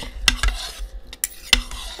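Spoons scraping and clinking against ceramic bowls as food is scooped, with a few sharp clinks, the loudest about a second and a half in.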